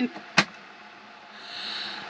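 Electric kettle's switch clicking off once, about half a second in, as the water comes to the boil. A faint hiss builds near the end.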